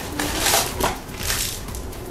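Crinkling and rustling of a toy blind box being opened: a foil bag being pulled from its small cardboard box and handled.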